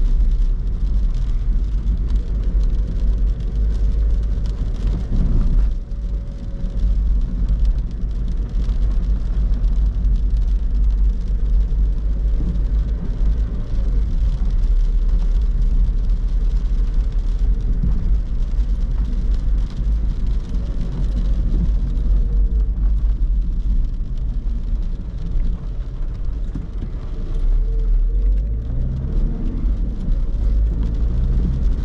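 Cabin noise of a 2010 Skoda Fabia II's 1.6 TDI four-cylinder diesel driving at city speed on wet streets: a steady low rumble of engine and tyres. The engine note rises near the end as the car speeds up.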